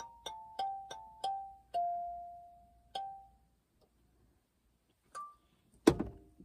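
Struck bell-like notes, each ringing out and dying away. Six come in quick succession, stepping down in pitch, and the last of these rings longest. Two more follow, spaced apart, then a louder knock near the end.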